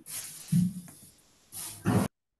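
A person's breathy hiss, with a short low hum about half a second in and another burst of hiss near the end.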